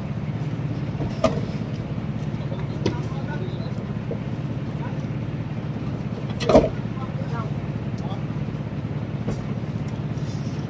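A steady low engine hum runs throughout. Over it come a few sharp knocks as blocks of ice are handled into the hold, the loudest a little past halfway.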